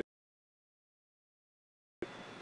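Complete silence: the audio track drops out entirely.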